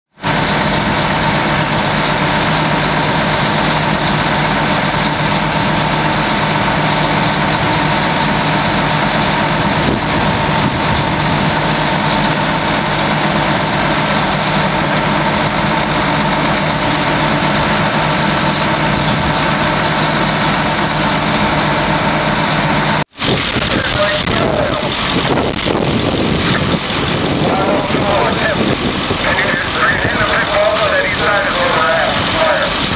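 Heavy vehicle engines idling with a steady drone and indistinct voices. The sound breaks off sharply about 23 seconds in and comes back as a less steady mix with more voices.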